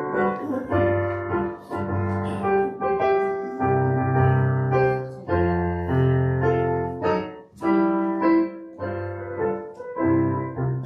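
Piano playing a hymn introduction in slow, held chords that change about once a second.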